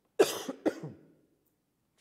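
A man coughing: a short fit of about three coughs in quick succession, the first the loudest. It is a cough he puts down to drainage.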